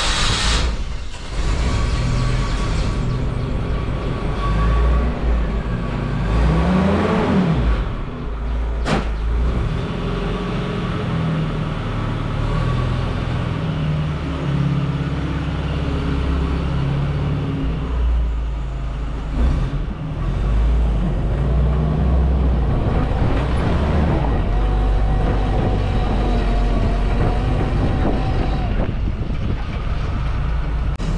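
Mahindra CJ3B jeep engine running just after being started, idling with a brief rise and fall in revs, then pulling away under load. A single sharp click comes about nine seconds in.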